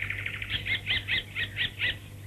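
A small bird chirping: a quick series of short, high, downward-sliding chirps, about four a second.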